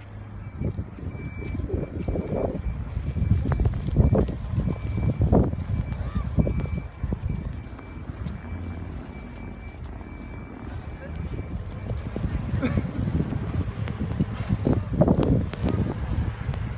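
Blizzard wind buffeting the microphone in rough, rumbling gusts that rise and fall. A faint high beep repeats steadily until about eleven seconds in.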